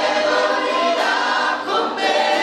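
A choir singing live, many voices holding notes together and moving to new notes about a second in.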